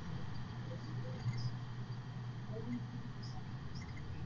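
Low steady hum of room tone, with a few faint, brief high squeaks.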